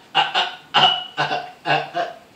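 A man laughing hard in a run of about five short, loud bursts that stop near the end.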